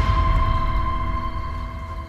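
Dramatic film-score sting: a deep rumbling boom with a sustained ringing tone over it, slowly fading away.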